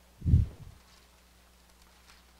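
A single dull, low thump about a third of a second in, then near silence.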